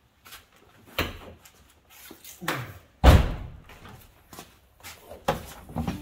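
Honda Civic hatchback's door and rear hatch being worked: a few latch clunks and one loud, sudden thump about three seconds in, as the hatch is opened.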